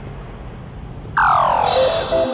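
Faint street background noise, then a little over a second in a loud electronic sweep falling in pitch: the transition sound that opens a TV news programme's ident jingle.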